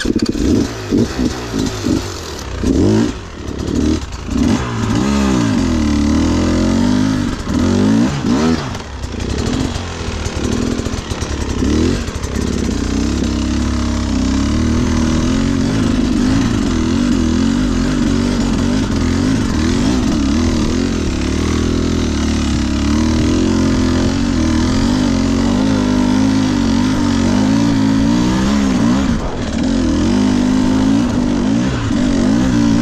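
Off-road dirt bike engine, revved up and down in quick throttle blips through the first dozen seconds, then pulling at a fairly steady, slightly wavering pitch under load as the bike climbs a grassy slope.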